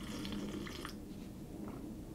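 Faint sipping and swallowing of coffee from a ceramic mug: a few soft small slurps and mouth clicks, mostly in the first second, with one more near the end.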